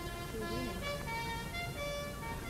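A lone bugle playing a few slow, held notes that change pitch, fairly quiet.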